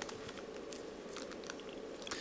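Faint clicking and rustling of plastic pieces as the layers of a 5-layer hexagonal dipyramid twisty puzzle, a shape mod of a 5x5x5 cube, are turned by hand.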